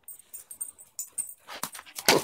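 A dog trotting up over dry fallen leaves on pavement: irregular crackling and rustling of leaves underfoot, growing louder near the end as it comes close.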